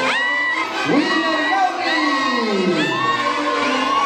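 Crowd of dancers shouting and whooping at a tunantada dance, several sharp rising cries about a second apart and one long falling cry near the middle. A tunantada band with saxophones and trumpets keeps playing thinly underneath.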